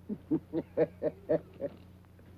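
A man laughing: a run of short pitched 'ha' sounds, about four a second, that stops about a second and a half in.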